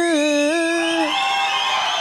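A man's sung note held steady and ending about a second in, as an audience breaks into cheering over it.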